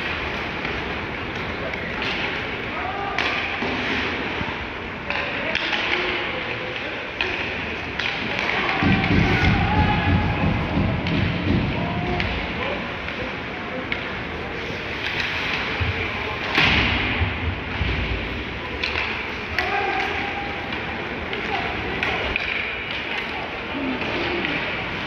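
Ice hockey play in an arena: thumps of puck, sticks and players against the boards over rink noise, with voices calling out. There is a heavier run of thudding near the middle and a sharp crack about two thirds of the way through.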